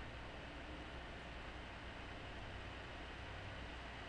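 Quiet, steady hiss with a faint low hum: the background noise of a desk microphone in a small room, with no distinct event.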